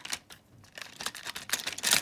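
Quick, irregular light clicks and rattles of plastic toy trains and track pieces being handled, growing louder toward the end.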